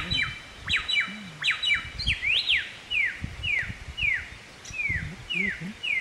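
Bare-throated whistler (kancilan flores) singing loud, clear whistles. It opens with a few quick clusters of sharp downslurred notes and one rising-then-falling note about two seconds in. After that comes a steady run of downslurred whistles, about two a second.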